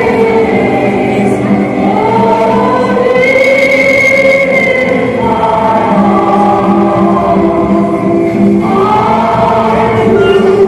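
Many voices singing a slow song together, with long held notes.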